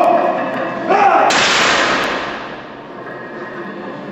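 A sudden loud crash about a second in that fades away over a second and a half, after a moment of voice or music.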